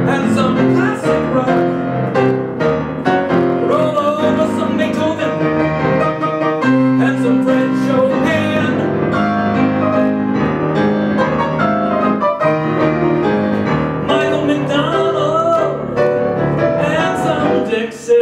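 Steinway grand piano played in a lively, continuous song accompaniment, with a man's singing voice wavering over it at times.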